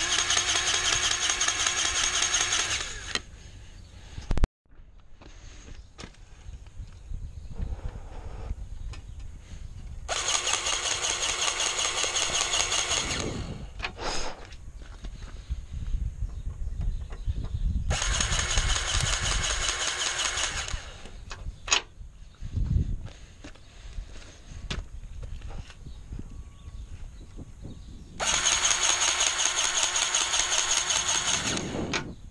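Cordless battery-powered grease gun's electric motor whirring in four separate runs of about three seconds each, pumping grease into the skid steer's grease fittings. Quieter handling rumble and a couple of sharp clicks fall between the runs.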